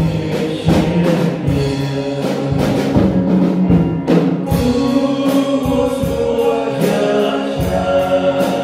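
Three men singing a Hmong gospel hymn in harmony through microphones, over an instrumental accompaniment with a steady beat.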